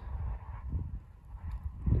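Footsteps on gravel, faint and uneven, over a low rumble on the microphone.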